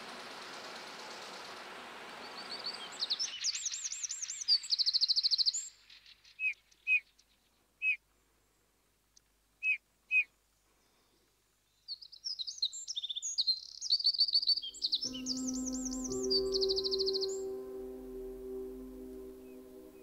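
A small songbird singing high, fast trilled phrases, with a few single short chirps in a quiet gap between them. An even rushing noise fades out under the first song, and about three-quarters of the way through, ambient music with long held bell-like tones begins.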